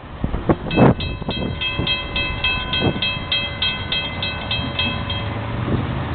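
Railroad grade-crossing warning bell ringing at about three to four strokes a second, over a low rumble. The bell stops a little after five seconds in, as the crossing signals shut off once the end of the train has cleared.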